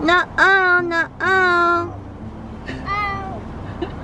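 A young child's high voice calling out in long, drawn-out notes, three in the first two seconds and a fainter one about three seconds in.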